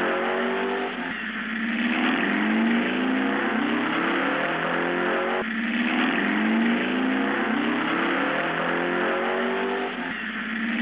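Car engine accelerating hard, its pitch climbing through the gears and dropping back at each shift, with sharp breaks about a second in and about halfway.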